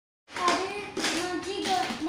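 A child's high sing-song voice starting a moment in, over the clatter of plastic toys being handled in a basket.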